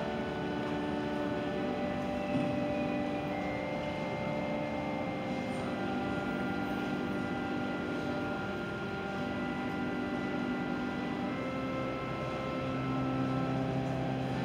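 Organ playing slow, sustained chords that change every few seconds.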